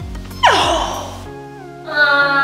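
Light background music, with a sudden loud vocal exclamation like a gasp about half a second in that slides steeply down in pitch.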